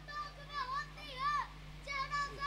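A child's high-pitched voice reciting in a drawn-out, wavering sing-song, two long phrases that rise and fall.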